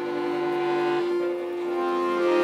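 A violin and an accordion playing a duet, with one long held note through most of it and lower accordion chords that drop out about halfway through.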